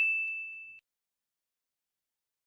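A single bright ding sound effect marking the correct quiz answer, ringing out and fading away in under a second.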